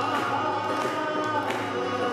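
Live acoustic band performance: male vocals sing a sustained Sufi-style Hindi melody over acoustic guitar, keyboard and harmonium, with a few hand-drum strokes from tabla and dholak.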